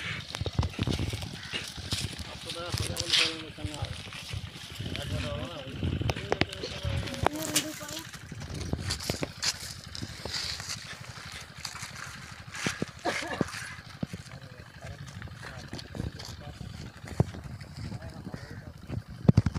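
Men's voices talking in the background, broken up, with scattered short clicks and knocks throughout.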